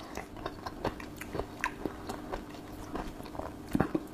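A person chewing a mouthful of Branston Pickle with its crunchy vegetable pieces: a run of small, irregular crunching clicks, a couple slightly louder near the end.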